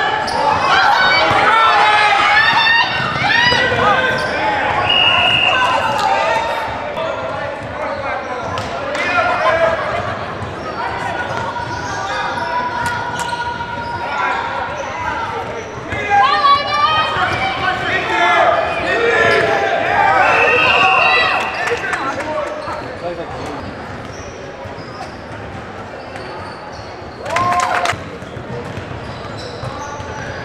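Spectators shouting and cheering in an echoing gymnasium while a basketball is dribbled on the hardwood court. Two short referee whistle blasts sound, about 5 seconds in and about 20 seconds in, and a brief loud sound comes near the end.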